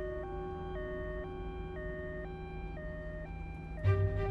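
Ambulance siren sounding a two-tone hi-lo wail, alternating evenly between a lower and a higher pitch, each held about half a second, over a low steady rumble.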